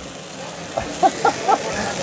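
Shredded cheese frying in a titanium-layered nonstick pan, a faint sizzle.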